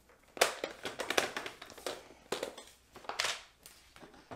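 Paper trimmer's scoring blade drawn along its track across cardstock, a run of irregular scraping clicks, with the card rustling as it is lifted off.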